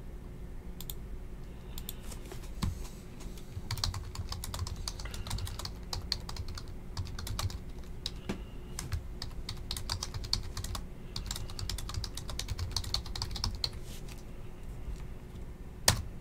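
Typing on a computer keyboard: runs of quick key clicks with short pauses between them, and one sharper click near the end, over a faint steady hum.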